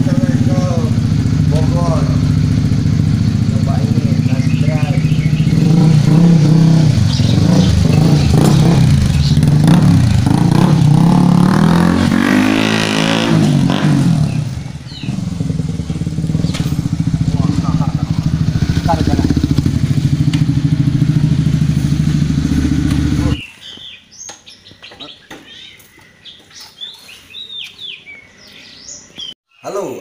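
Sport motorcycle engine running steadily, with voices over it. About twelve seconds in, its pitch rises and falls once as it revs and pulls away. The engine cuts off at about 23 seconds, leaving a quieter stretch with faint chirps.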